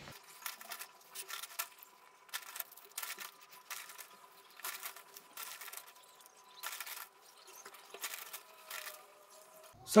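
Faint, irregular crumbly rustles of potting soil being scooped and pressed in by hand around a plastic container in a clay pot.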